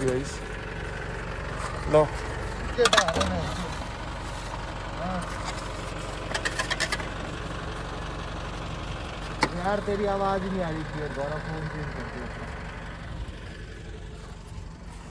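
Isuzu D-Max pickup's engine idling steadily, with short bursts of clicking clatter twice over it.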